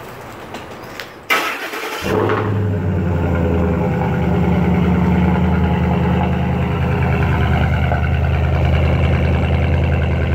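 Pickup truck engine cranked by the starter, catching about two seconds in, then idling steadily.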